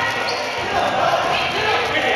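Dodgeball players' voices in a gym, with rubber balls bouncing on the hardwood floor.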